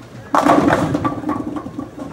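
A Storm Code X bowling ball crashes into the rack about a third of a second in, and the pins clatter and rattle as they scatter and fall, fading toward the end.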